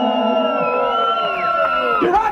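Live rock band holding long, sustained notes, some sliding down in pitch, while the crowd cheers and whoops.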